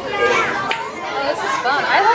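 Crowd chatter with overlapping, indistinct voices of children and adults.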